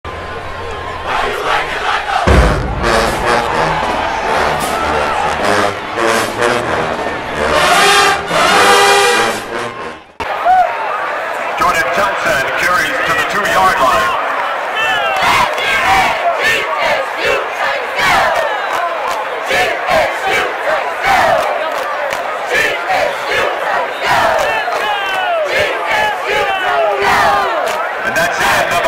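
For about the first ten seconds, an intro with music-like tones and a low bass plays, then cuts off suddenly. After that, a squad of cheerleaders chants and yells over a stadium crowd, with frequent sharp claps.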